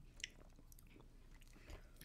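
Near silence: room tone, with a few faint clicks and mouth sounds of eating ice cream with a spoon.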